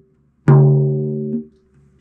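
A drum with a coated Remo batter head struck once in the center with a felt mallet, ringing at its fundamental of about 142 Hz (a C-sharp) with a decaying stack of higher tones, then stopping short about a second later.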